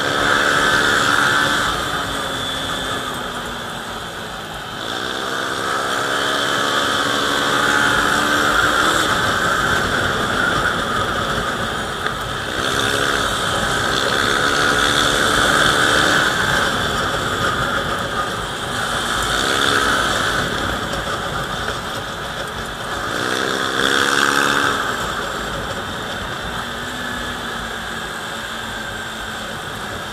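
Motorcycle engine under way, its pitch rising and then holding about four times as the throttle is opened, over steady wind rush on the microphone.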